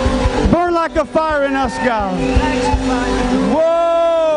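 A man singing into a microphone over a live worship band: a few short sliding phrases, then a long held note near the end.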